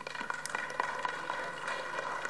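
Applause: many people clapping irregularly in a large hall.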